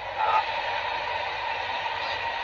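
Steady hiss of noise inside a car's cabin, with a faint steady tone running through it.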